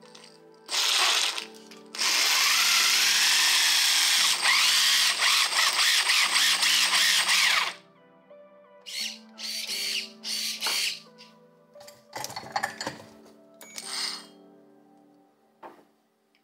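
Brushless motors of a beetleweight combat robot driven from the radio transmitter, whirring through 3D-printed plastic gears. They run for about six seconds with the pitch rising and falling, then give several short blips.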